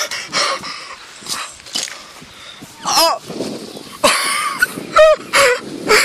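Several short, high-pitched calls in the second half, each rising and falling in pitch, with a few knocks and rustles before them.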